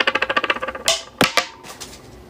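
A fast run of sharp, ratchet-like clicks that slows into a handful of separate clicks in the second half.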